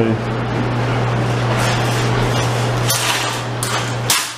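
Metal shopping cart being handled and pushed, rattling with a few sharp clinks over a steady low hum.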